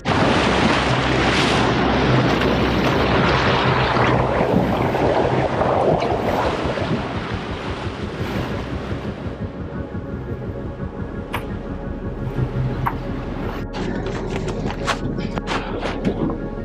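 Water rushing and churning loudly against the boat's side and the camera at the waterline, easing off about halfway through.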